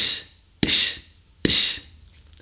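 Beatboxed {ds}: a dry kick made with the tip of the tongue, unaspirated and outward, running straight into a hissed s. It is done three times, about three-quarters of a second apart, each a sharp click followed by a short high hiss.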